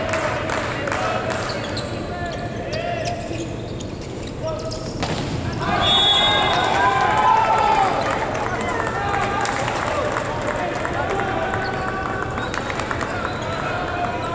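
Indoor volleyball play in a large, mostly empty arena: sharp hits of the ball and players' shouts echoing around the hall. The voices are loudest about six seconds in, as a team gathers after winning the point.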